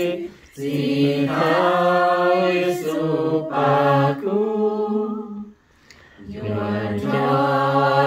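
A small group of men and women singing a slow hymn together without accompaniment, in long held phrases. The singing breaks off briefly about half a second in and again for nearly a second past the middle, between phrases.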